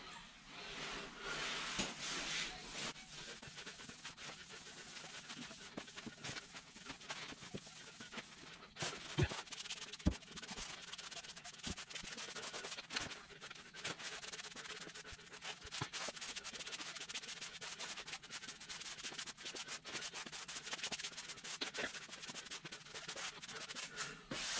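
Soft-edged grout float scraping and rubbing pre-mixed grout across a hexagon tile floor: a continuous rasping with many small clicks and a few sharper knocks.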